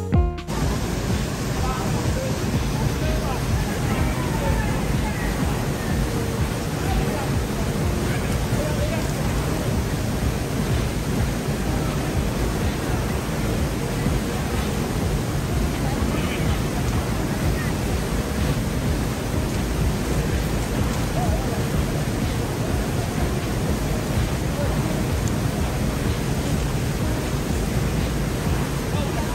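River cascade pouring through a narrow rock gap into a pool: a steady rush of water noise, strongest in the low end. A music track cuts off at the very start.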